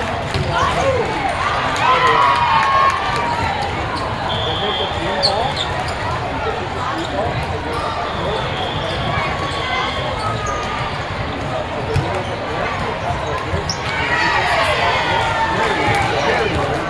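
Indoor volleyball rally: ball hits and bounces on the hard court, short sneaker squeaks, and players' calls over the hall's background voices. Louder shouting near the end as the players celebrate the point.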